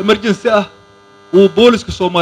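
A man speaking into a handheld microphone in two short phrases with a pause between, over a steady electrical hum from the sound system.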